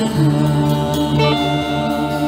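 Improvised ambient music played live on guitars: a steady low drone under long held notes, with new higher notes coming in about a second in and then held.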